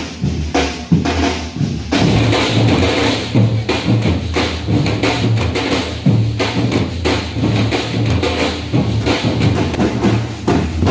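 Samba batucada percussion ensemble playing a driving rhythm, with deep bass drums under snare-type drums. The sound grows fuller about two seconds in.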